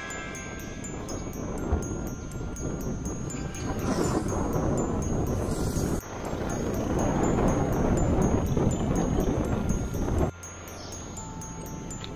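Wind buffeting the microphone of a bicycle-mounted camera riding at speed, with background music underneath. The noise breaks off and changes abruptly twice, about six and ten seconds in.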